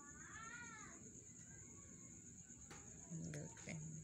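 A single short high call that rises then falls in pitch, like a meow, lasting under a second, over a faint steady high-pitched whine; faint voices near the end.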